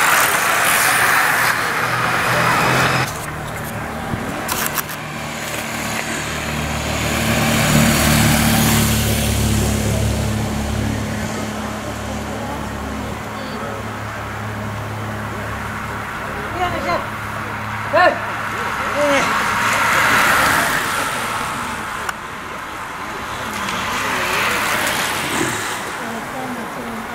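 A motor vehicle's engine running steadily at low revs for most of the stretch, swelling about eight seconds in and fading again toward the end. A group of racing bicycles passes at the start and again about twenty seconds in, with a short sharp knock about eighteen seconds in.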